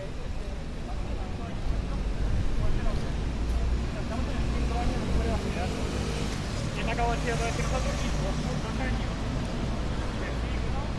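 City street ambience: a low rumble of road traffic that grows louder about two seconds in, mixed with passers-by talking.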